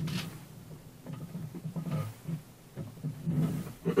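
A man's low voice, faint and in short broken snatches without clear words.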